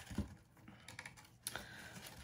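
Faint handling noises of a folded cardstock gift box with ribbon: soft rustling with a few light clicks, the sharpest about a quarter second in and another near a second and a half.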